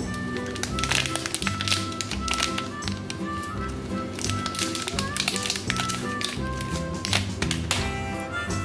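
Background music over the crackle and rustle of a Cadbury chocolate bar's wrapper being torn and peeled open by hand, in many short crinkles.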